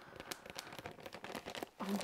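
Cross stitch charts and kit packaging rustling and crinkling as they are handled, a quick run of light crackles.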